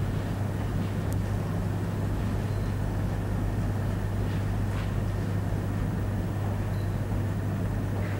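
Steady low hum under a faint even hiss: the background hum and noise of the recording during a pause in the talk.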